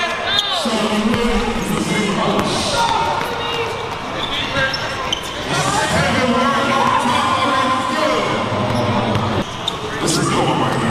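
Basketball dribbled on a hardwood gym floor during one-on-one play, with spectators' voices and chatter.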